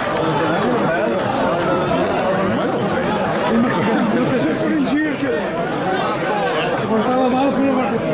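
Several people talking over one another in continuous chatter, with no single clear voice.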